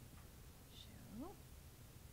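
Near silence: room tone, with one faint word, "well," spoken with a rising pitch about a second in.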